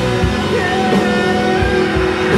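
A live rock band playing electric guitars over drums, loud and steady, with a few sustained notes bending in pitch.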